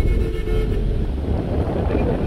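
Force Tempo Traveller van on the move, heard from inside its cabin: a steady low rumble of engine and road noise.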